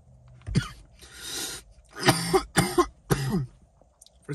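A man coughing after a hit from a THC vape cartridge: a short cough, a breathy exhale about a second in, then three harsher coughs close together.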